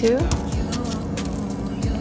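Background music with a steady held tone and faint ticks, after a woman's single spoken word at the start.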